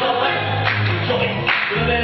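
Cast of a stage musical singing together in chorus, a full ensemble number with no break.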